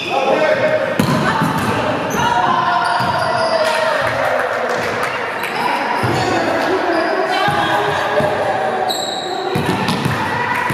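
Volleyball game in a gymnasium: players' voices echoing around the hall, over repeated thuds of the ball being struck and bouncing on the wooden floor.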